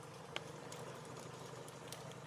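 Faint, steady low hum of an engine running at a distance, with one faint click about a third of a second in.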